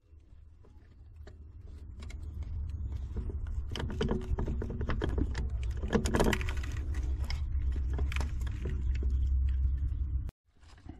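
Replacement tilt motor for an OMC Stringer outdrive being worked by hand into its mount: scattered light metallic clicks and scrapes as the motor and its bolts are fitted, over a low rumble that builds over the first few seconds.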